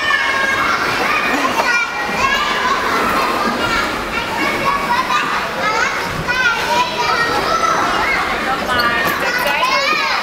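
Many children playing at once, their high-pitched voices overlapping in a steady, loud din.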